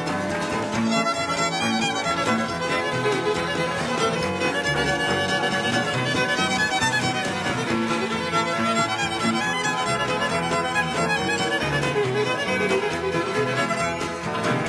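A live country band playing a fiddle-led instrumental, the fiddle carrying the tune over a steady rhythm and bass backing.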